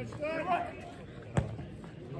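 A shout from a player on the pitch, then about one and a half seconds in a single sharp thud of a football being kicked.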